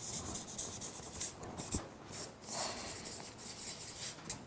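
Marker pen writing on a paper flip chart: a run of short scratchy strokes with brief pauses between them, and a single light knock about two seconds in.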